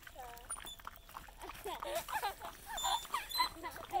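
A young child's high voice chattering in short phrases, ending in a laugh.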